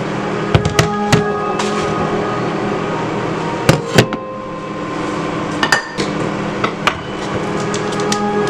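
A series of sharp knocks and taps as a plastic-wrapped pack of meat and hands hit a wooden bamboo cutting board, with the loudest pair of knocks about four seconds in as the pack is set down, and rustling of the plastic wrapping as it is opened.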